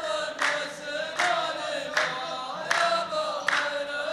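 A row of men chanting a verse in unison, the traditional saff chorus of a Saudi muhawara. A sharp hand clap falls together about every 0.8 seconds, five claps in all.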